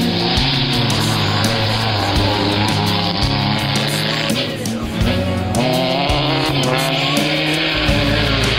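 A rally car at speed on a gravel stage, its engine and tyres on loose gravel, mixed in under a song with a steady beat. The car sound breaks off briefly about halfway through.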